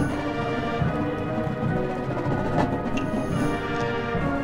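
A high school marching band playing: the full band of brass and percussion comes in with loud, sustained chords, and struck percussion hits sound through them.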